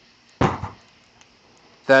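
A single sharp thump about half a second in as a stick strikes a burning gas tank, knocking a puff of fire and smoke out of it; the thump dies away quickly.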